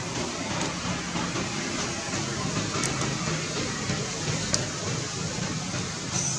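Steady outdoor background noise: an even hiss with a low rumble underneath and no distinct calls.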